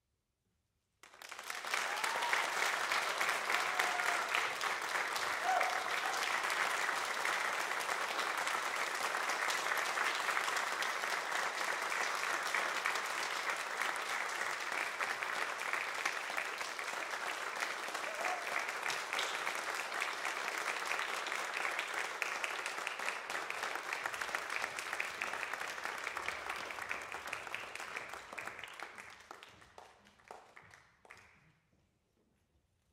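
Audience applauding in a recital hall. The applause starts suddenly about a second in, holds steady, and dies away near the end.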